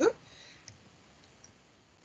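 A woman's spoken word ends, then a pause of near silence with faint hiss and a single faint click a little under a second in.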